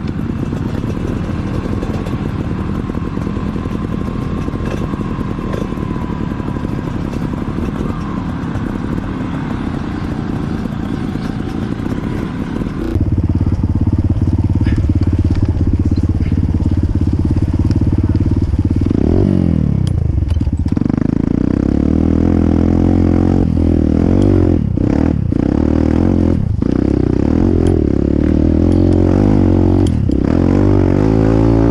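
Dirt bike engines running at a distance, then, about 13 seconds in, a dirt bike engine close up taking over and running steadily. It revs up around 20 seconds in and drops out briefly a few times near the end as the throttle is chopped.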